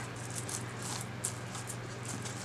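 Faint clinking and rustling of a rhinestone-set metal belt being handled and laid out on a burlap surface, a few soft scattered ticks over a low steady hum.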